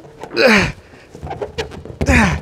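A man's short, breathy grunt of effort with a falling pitch, about half a second in, followed by a few faint light ticks.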